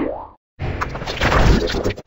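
Heavily edited cartoon audio: the end of a distorted spoken word, a short gap, then a loud, dense burst of mixed music and sound effects starting about half a second in and cutting off abruptly at the end.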